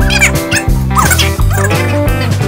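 Background music with a pulsing bass line. Several short, high, squeaky glides are laid over it near the start and about a second in.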